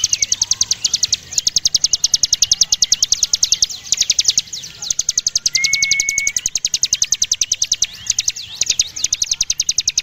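A ciblek gunung (a prinia) singing its rapid 'ngebren' song: long runs of sharp high notes, well over ten a second. The runs break briefly a few times, and about halfway through there is one short, level whistled note.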